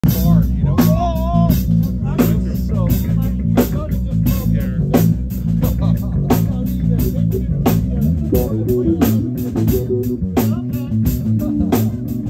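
Live jazz-rock band playing loud: a drum kit keeping a steady beat with regular cymbal and snare hits over a heavy electric bass line, with electric guitar on top.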